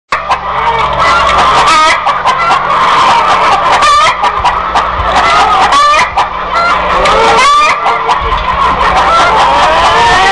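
A flock of chickens clucking and squawking all together, loud and continuous, with sharper squawks standing out about every two seconds.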